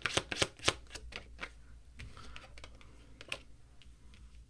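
A tarot deck shuffled by hand: a fast run of sharp card clicks in the first second, slowing to a few scattered clicks, then one crisper click about three seconds in as a card is laid on the spread.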